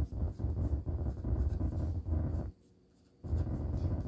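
Pen writing on paper: short scratching strokes over a low steady hum. The sound cuts out abruptly for under a second past the middle, then resumes.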